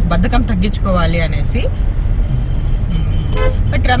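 Steady low road and engine rumble heard inside the cabin of a moving car.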